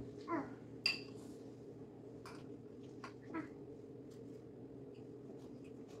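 Two short, high, rising squeaky vocal sounds about three seconds apart, over a faint steady low hum. Between them come a few light clicks and clinks of utensils on a bowl and a cutting board, the sharpest about a second in.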